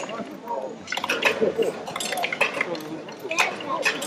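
A Rube Goldberg chain reaction machine at work: a run of sharp clicks and clinks from its wooden parts and balls, several close together about a second in and again near the end, over an indistinct murmur of onlookers' voices.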